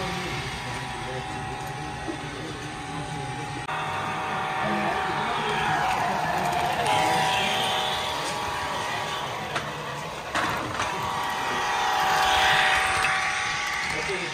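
Model train with a BNSF diesel locomotive running over a layout bridge: a steady whine that swells twice, about six seconds in and again near the end, with a few clicks in between, over indistinct voices in the room.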